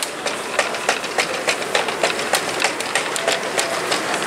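Plastic shopping cart being pushed across a tile floor, its wheels and basket rattling in a run of sharp clicks, about three a second.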